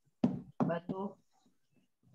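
Speech only: a voice saying a few short, quiet words in the first second, which the recogniser did not write down.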